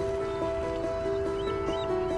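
Background music: a few sustained notes, steady and soft, shifting in pitch every half second or so.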